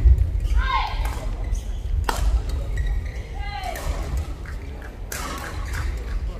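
Badminton rally: rackets striking a shuttlecock, with sharp cracks about two seconds in and again about five seconds in, echoing in a large hall. Short shouted calls are heard in between, over a low rumble.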